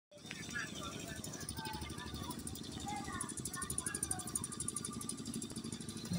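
Outdoor night ambience: a steady rumble of wind buffeting the microphone, with faint distant voices and a fast, steady high-pitched chirring.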